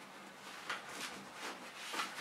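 Quiet handling noise: a few soft rustles and light knocks as an infant car seat's fabric canopy is pulled back and fastened onto its plastic carry handle.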